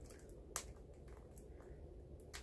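One faint click about half a second in, from fingers picking at a new Blu-ray case to get it open, over quiet room tone.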